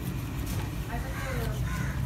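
A man's voice speaking Egyptian Arabic, asking for meat, over a steady low background hum.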